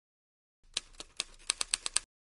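Typewriter sound effect: about eight quick, irregular key clicks starting under a second in, as a caption is typed out.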